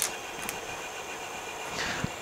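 Light plastic clicks as cable ties are handled on a 3D-printed spool: a sharper click at the start and another about half a second in, over a steady background hum.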